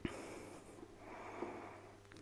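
Faint breathing of a lifter squatting under a loaded barbell, with a short click at the very start.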